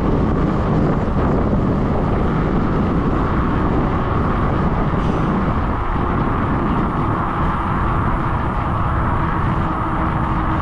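Wind buffeting the microphone, a steady loud rush of noise, as the e-bike carries it down a long hill at speed.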